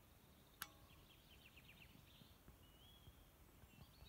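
Near silence: faint outdoor ambience with quiet, high bird chirps and a brief whistled note, and one sharp click about half a second in.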